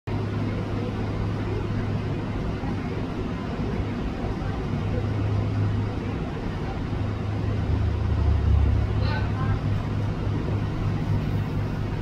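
Steady low engine rumble of a large motor yacht passing close, with the wash of its bow wave and wake. The rumble deepens and grows louder about eight seconds in.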